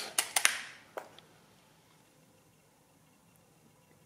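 The clearing wing nut of a Thales model A pinwheel calculator being turned to reset the result register: a quick run of mechanical clicks in the first half second and one more click about a second in.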